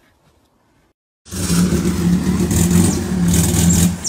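Car engine revving hard at high revs, loud and sustained, cutting in abruptly about a second in after a near-silent start.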